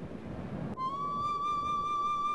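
Background music: a single long flute note comes in about three-quarters of a second in, rises slightly in pitch, then holds steady. A soft rushing noise comes before it.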